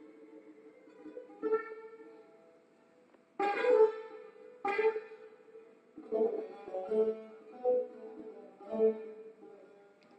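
Persian long-necked plucked lute playing a slow, free-rhythm phrase: a few struck notes with pauses between them, the two loudest about three and a half and five seconds in, then a run of single notes that each ring and die away.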